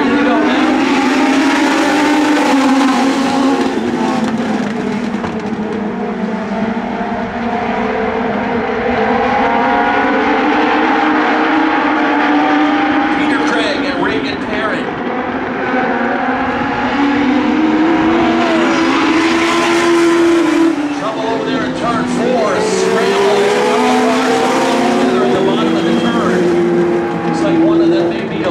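A pack of Legend race cars running together on a paved oval, their Yamaha motorcycle engines overlapping. The engine notes rise and fall in pitch continuously as the cars accelerate and lift through the turns.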